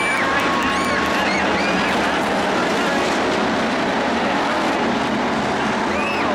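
Several IMCA Hobby Stock cars racing together, their engines running hard in a dense steady noise, with pitches that keep rising and falling as the cars lift and accelerate through the turns.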